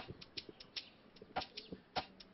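Footsteps of slide sandals on a paved yard: sharp slaps at uneven intervals, a loud one at the start and another about a second and a half in, with fainter ticks between.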